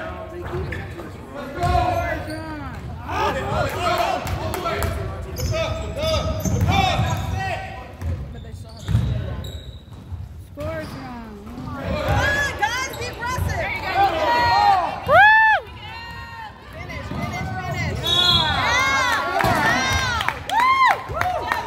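Basketball play on a hardwood gym floor: sneakers squeaking in short rising-and-falling chirps, thickest and loudest in the second half, with the ball bouncing and the voices of players and spectators.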